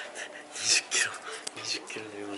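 A person whispering, a few short breathy syllables with almost no voice in them.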